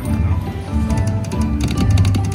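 Long Bao Bao slot machine playing its game music, with a run of rapid ticks from about a second in as the reels spin.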